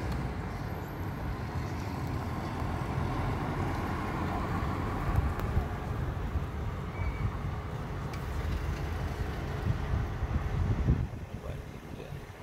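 Wind buffeting a phone's microphone outdoors, a gusty low rumble that eases about eleven seconds in.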